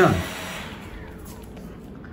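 Brushless motors of an SG907 Max quadcopter spinning down with a faint falling whine and a fading hum, then stopping. The armed motors cut out by themselves because takeoff was not started quickly enough.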